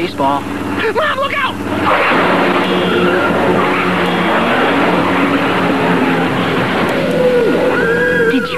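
Cartoon sound effect of a jeep driving off fast on a dirt road: the engine running hard and the tyres skidding and throwing up gravel. It starts about two seconds in and keeps on steadily.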